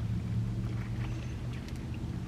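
Steady low hum of a car's cabin, as from an idling engine.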